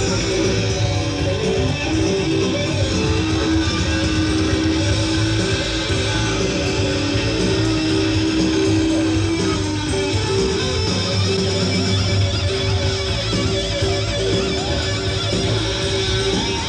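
Live rock band playing an instrumental passage, electric guitar to the fore over bass, with long held guitar notes.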